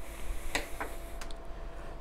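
A few light clicks and taps from small tools and parts being handled on a workbench, heard over a faint steady hum.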